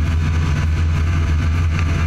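Snowmobile engine running at a steady cruising speed, a deep even drone, heard close up from the moving machine.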